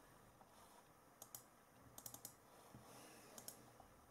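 Near silence broken by faint, scattered clicks of someone working a computer, several coming in quick pairs.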